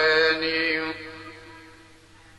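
A man's singing voice holding one long, steady note. The note ends about a second in and dies away in reverberation.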